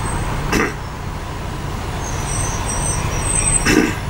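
Steady low rumble of a bus engine and road noise heard from inside the bus as it moves in traffic, with a short sound about half a second in and another just before the end, and a faint high whine for about a second and a half in the second half.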